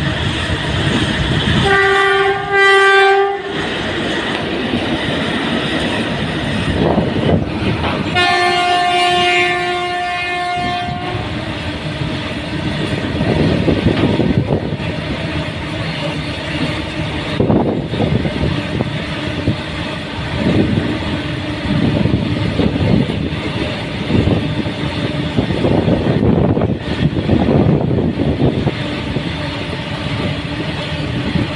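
Long freight train of open wagons rolling past, a continuous clatter and rumble of wheels on rail. The locomotive horn sounds twice: a short blast about two seconds in and a longer one of about three seconds near the eight-second mark.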